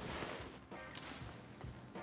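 Faint handling noise of fishing gear and clothing: a brief soft rustle, then a few small scattered sounds as a rod is set down and another reached for on the boat deck.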